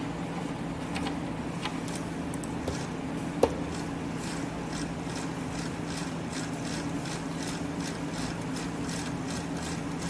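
A steady low hum of room or equipment noise, with a few faint clicks and one short blip about three and a half seconds in.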